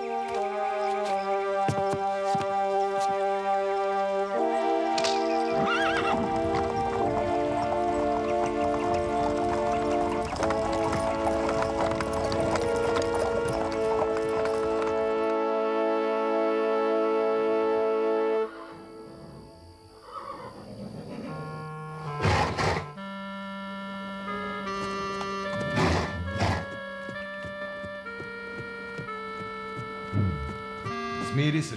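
Background music with long held notes that drops away suddenly about eighteen seconds in. Over the quieter music that follows, a cartoon horse whinnies and gives two short snorts.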